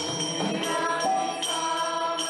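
Group kirtan singing by devotees, with small hand cymbals ringing in a steady beat.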